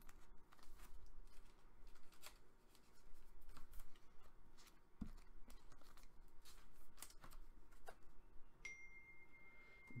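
Trading cards being handled: faint rustling and scattered light clicks as the cards slide against each other and are set down on a cardboard box. A faint steady high tone sets in near the end.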